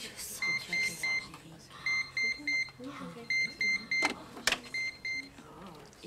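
Telephone keypad beeping as a number is dialled: eleven short beeps on one pitch, mostly in quick runs of three, with two sharp clicks about four seconds in.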